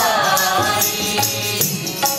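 Sikh kirtan: voices singing a devotional hymn over held harmonium chords, with tabla drumming.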